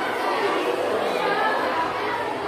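Many people talking at once: a loud, steady babble of overlapping voices with no single clear speaker.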